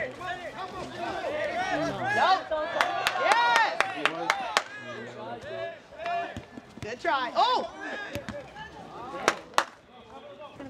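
Several voices shouting and calling over one another across a soccer field, with sharp thumps of the ball being kicked, two loud ones in quick succession near the end.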